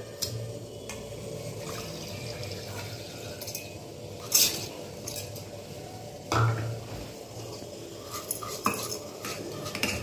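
Stainless steel bowl and spoon clinking lightly a few times as soaked pearl millet is handled, the loudest clinks about four and six seconds in.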